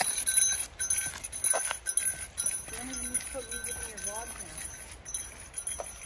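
A bear bell, a small jingle bell worn at the hip, jingling over and over in time with walking steps.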